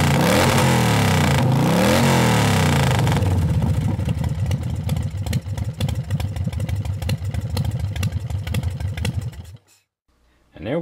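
An engine revving up and down about three times, then running on with a fast clatter. It cuts off suddenly near the end.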